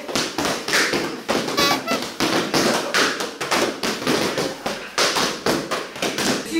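Boxing gloves punching hand-held strike pads in a fast, steady run of smacks, about three a second.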